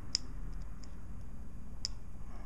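Two sharp little clicks about a second and a half apart, with fainter ticks between, as the test probe touches a transmission shift-solenoid lead: the snap of the current arcing at the contact. The solenoid itself does not audibly cycle, the sign that it has failed.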